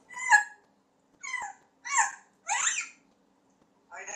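African grey parrot giving four short, high-pitched calls in quick succession, the last one longer and rougher.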